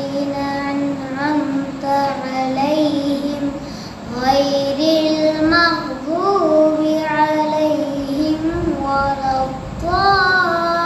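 A boy reciting the Quran in Arabic in a melodic chant, holding long notes that rise and fall slowly in pitch, with a short pause for breath about four seconds in.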